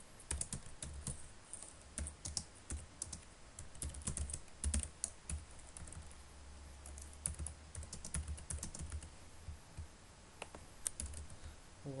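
Typing on a computer keyboard: irregular runs of quick key clicks as a line of code is written, with a brief pause about three-quarters of the way through.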